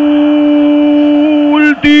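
A man's voice holding one long note at a steady pitch, a drawn-out radio football commentary call; near the end it breaks into rapid speech.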